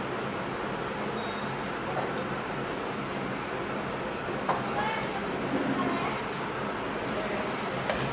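Steady whirring background noise with a low hum, and a few faint knocks and drips as a ladle lifts blanched spinach out of a pan of hot water.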